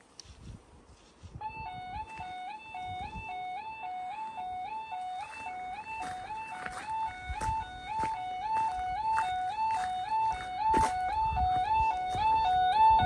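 Level crossing miniature stop light warning alarm starting about a second and a half in: an electronic two-tone warble alternating steadily between two pitches about twice a second. It sounds as the light turns from green to red, the warning that a train is approaching.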